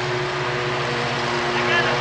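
A steady, even engine hum at a constant pitch, like a motor idling, running under the scene.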